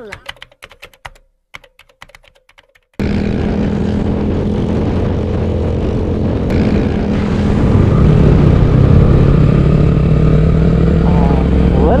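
Quick keyboard-like clicking for about three seconds. Then a motorcycle's engine and wind noise cut in suddenly, running steadily and growing louder a few seconds later.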